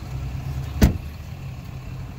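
Pickup truck's driver door shut with a single solid thud a little under a second in, over a steady low idling-engine rumble.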